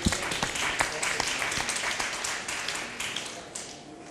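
Audience applauding: dense, irregular clapping that thins out and fades near the end.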